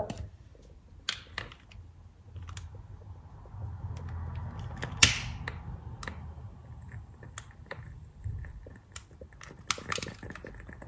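A long utility lighter clicking and a wooden candle wick catching and starting to crackle: scattered soft, sharp clicks, with one louder click about halfway through.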